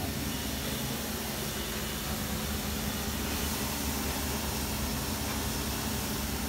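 Steady background hum and hiss with a constant low tone and no distinct events.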